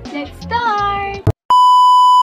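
Pop music with a singing voice, broken off after about a second by a click and a brief dead silence. Then comes a loud, steady, high-pitched test-tone beep of the kind that goes with TV colour bars, used as an editing transition.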